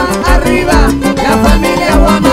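Live Latin dance band music, loud, with a steady beat pulsing about twice a second.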